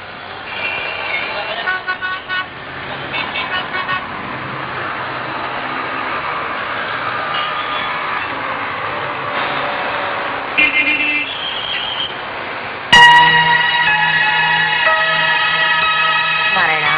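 Busy street traffic: a steady rumble of vehicles with vehicle horns tooting several short times. About 13 s in, music starts suddenly and loudly and runs on.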